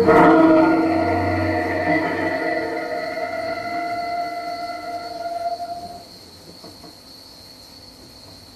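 Experimental music for cello and sampler: a sudden loud attack followed by several held tones that slowly fade and die away about six seconds in. A faint high steady tone carries on underneath.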